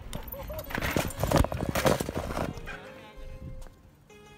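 A burst of loud, rapid clattering knocks and rustling from a camera being handled and jostled against riders' vests and a bicycle, lasting about two seconds before settling down.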